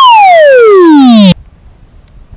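A loud, buzzy electronic sound effect: a tone that has just swept up in pitch glides steadily down for over a second, then cuts off abruptly.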